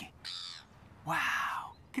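A man's loud, excited, rasping shout of 'Wow!' about a second in, after a short breathy intake of breath.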